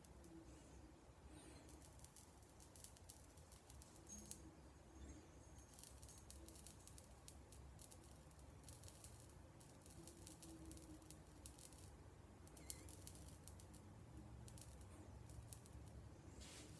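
Near silence with faint, irregular crackling and ticking as beard hair singes under a handheld 445 nm blue laser beam.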